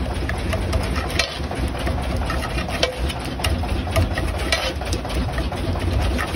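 Perforated metal masher pounding and scraping pav bhaji on a large flat iron tawa: an irregular run of clacks, several a second, over a steady low rumble.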